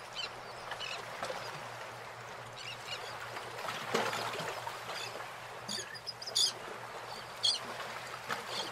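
Steady hiss of fast-flowing floodwater and heavy rain, with a few short high-pitched chirps in the last couple of seconds.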